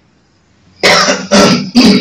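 A person coughing three times in quick succession, starting nearly a second in.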